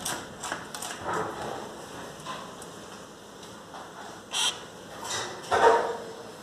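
Dogs at a glass door making scattered short sounds: a brief bark near the end, the loudest sound, with a few light knocks and clicks before it.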